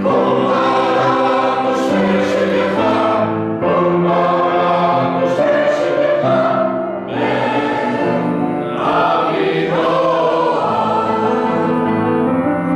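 Mixed choir of men and women singing sustained phrases in parts, with brief breaks between phrases.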